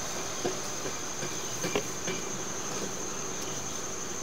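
Steady high-pitched insect chorus, like crickets, with a few faint clicks as the sewer camera head is moved about in the grass.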